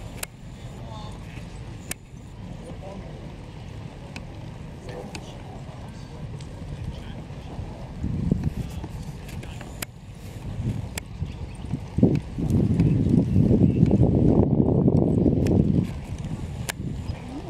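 A Clydesdale heavy horse's hooves and a set of harrows dragging through dry ploughed soil, with scattered sharp clicks from the trace chains and harness. About twelve seconds in, a louder, rough rushing noise takes over for the last few seconds.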